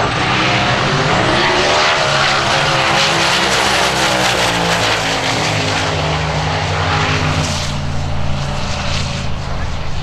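Outlaw 10.5 Ford Cortina drag car accelerating flat out down the strip. The loud engine's pitch steps and shifts several times as the car pulls away on a 7.62-second pass.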